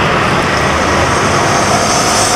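Loud, steady road traffic noise from passing vehicles.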